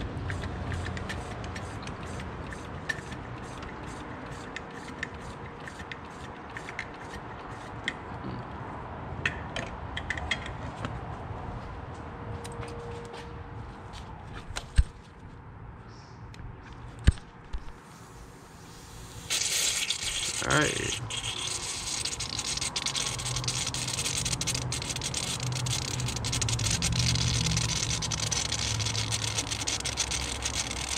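Air and coolant hissing and spitting out of an opened intercooler bleed screw on an Audi supercharged 3.0T V6 as the cooling system is pressurised. The hiss starts suddenly about two-thirds of the way in and is the loudest sound; it means air is still trapped in the intercooler. Before it come small ticks and a couple of sharp clicks of a tool on the bleed screw.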